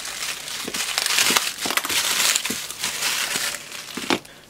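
Plastic courier mailer bag being pulled open and crumpled by hand: a continuous crinkling rustle of thin plastic with small crackles.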